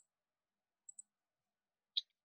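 Faint computer mouse clicks: one at the start, two quick clicks about a second in, and a sharper click near the end, as text is selected and highlighted.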